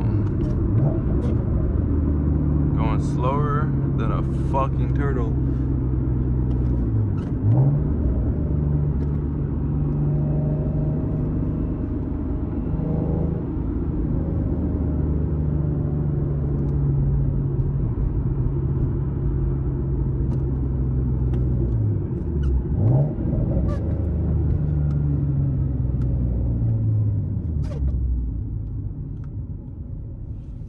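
Nissan 370Z's 3.7-litre V6 with a modified exhaust, heard from inside the cabin, droning steadily while cruising. Its pitch dips and climbs again twice, about seven seconds in and again a little past twenty-two seconds, as the revs change.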